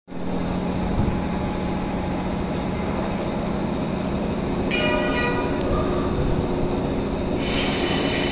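JR 185 series electric train at a station platform, its motors and wheels giving a steady low rumble as it starts to pull out. A brief high ringing sound comes about five seconds in, and a higher hiss-like noise rises near the end.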